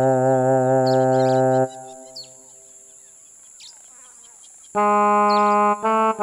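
Background music on a brass-type wind instrument: a held low note with vibrato, then about three quieter seconds where only faint bird chirps are heard, then a run of short notes starting again near the end.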